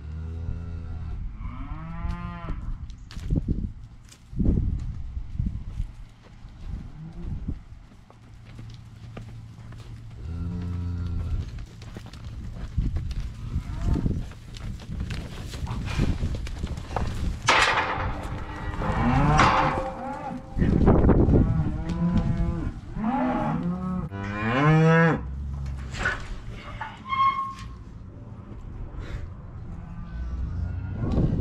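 Black beef cows and calves mooing and bawling again and again, several animals calling one after another and sometimes together, some calls higher-pitched than others. These are the calls of cows and calves being separated at weaning.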